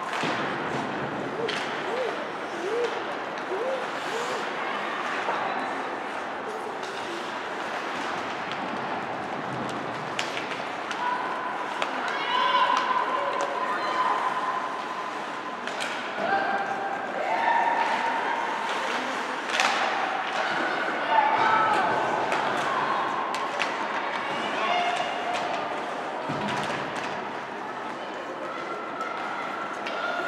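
Ice hockey game in play: skates scraping, sticks clacking and the puck thudding against the boards in scattered sharp knocks, with players and spectators shouting and calling out, mostly in the second half.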